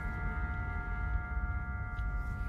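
Background music alone: a few sustained, bell-like chord tones held over a low bass.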